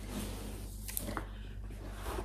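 Faint rustling of a cloth project bag being picked up and handled, with a light click about a second in.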